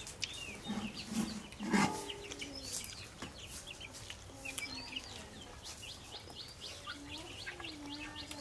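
Birds calling throughout, with rapid high chirps. Lower clucking calls, like those of chickens, come about one to two seconds in and again near the end.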